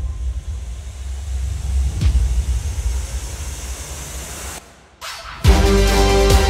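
A low, steady outdoor background rumble with no speech, with a single click about two seconds in. It drops away, and background music with sustained tones comes in about five and a half seconds in.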